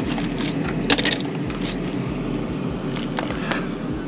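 Ice cubes clattering and cracking as they are grabbed from a freezer and piled onto metal parts to chill them. A few sharp clicks sound over a steady rushing background noise.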